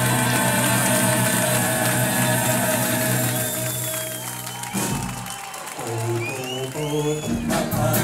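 Close-harmony vocal group and backing band holding a final chord, which cuts off sharply a little under five seconds in, followed by audience applause and cheering. Near the end the band starts up again with guitar.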